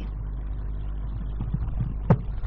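Steady low background rumble, with a few faint soft knocks in the second half.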